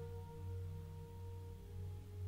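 Soft ambient meditation music: a low drone that swells and fades about once a second under long, held bell-like tones.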